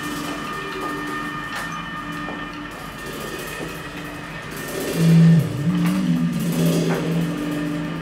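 Free-improvised bass guitar and drums over a steady, high electronic drone: held bass notes, with the loudest one about five seconds in sliding and wavering in pitch, and a few sparse cymbal and drum strikes.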